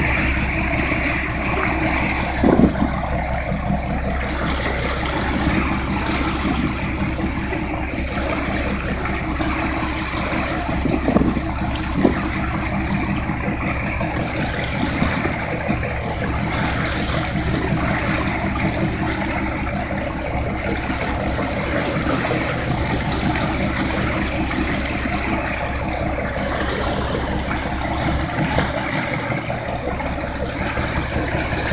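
A boat's engine running steadily while under way, with the rush of water from its wake. A few short, louder sounds stand out about two and a half seconds and eleven to twelve seconds in.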